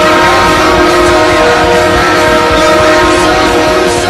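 Ice-hockey goal horn of the Green Bay Gamblers, blowing a loud, steady chord of several tones held without a break.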